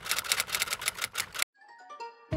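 Typewriter keystroke sound effect: a rapid run of sharp key clicks that stops about a second and a half in, followed by a brief, quieter ringing tone.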